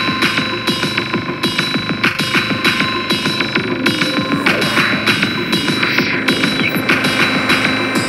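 Electronic synthpop music: a steady drum-machine beat of hi-hats, snare and kick under sustained, drone-like synthesizer tones with occasional gliding pitches, played on ANS3, an iPad emulation of the Soviet ANS optical synthesizer.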